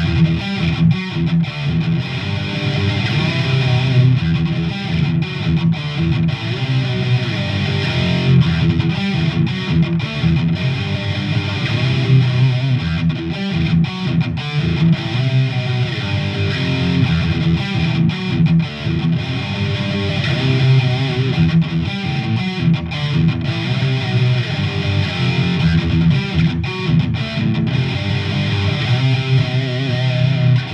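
Electric guitar played through distortion, a continuous metal riff with heavy low end and no pauses.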